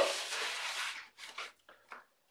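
A large sheet of corrugated cardboard sliding and rubbing across a tabletop as it is shifted into place, fading out after about a second, then a few light taps and rustles as it settles under the hand.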